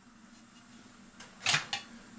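Quiet room with a faint steady hum. About one and a half seconds in, two quick clatters come as the clock's thin painted metal background plate is set down on a workbench among tools.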